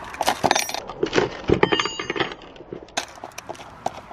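Small metal tool clicking and clinking against a skateboard wheel's axle nut as the nut is loosened and taken off, with a few short metallic rings. The clicks come thickest in the first three seconds.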